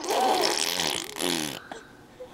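A baby blowing a raspberry with her tongue out between her lips, a spluttering buzz that lasts about a second and a half and fades away.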